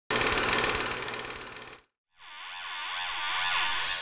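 Channel logo sting sound effects: a dense rattling burst of rapid pulses that fades and cuts off just under two seconds in. After a short gap comes a swelling whoosh with sweeping tones that peaks near the end.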